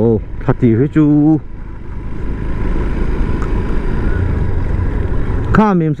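Motorcycle engine running steadily under way, with road and wind noise on the microphone. Short bits of the rider's speech come about the first second and again near the end.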